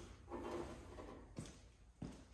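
Faint handling sounds from a hand-squeezed two-part panel bond dispensing gun being worked while laying an adhesive bead, with one sharp click about one and a half seconds in.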